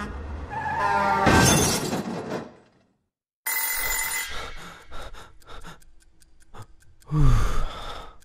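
Animated-film sound effects: a loud swelling sound that cuts off abruptly, then after a short silence a bell ringing briefly. Rapid clock ticking follows, broken by a short loud sound falling in pitch near the end.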